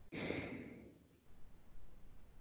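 A person's single breathy exhale or sigh into a close microphone, starting suddenly and fading out within about a second.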